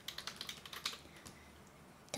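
Faint, quick run of clicks from typing on a computer keyboard, about a dozen in the first second, then a few scattered taps before it stops.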